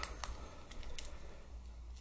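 A dog's collar and a small clip-on LED collar light being handled: about half a dozen faint, light metallic clicks and clinks, bunched in the first second or so.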